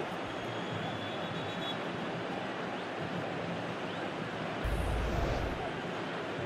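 Stadium crowd noise from a football broadcast: a steady din from the stands, with a brief low rumble about five seconds in.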